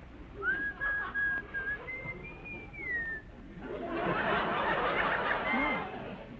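A woman whistling a short tune: a few held notes, then a phrase that rises and falls. In the last couple of seconds a dense noise is the loudest sound.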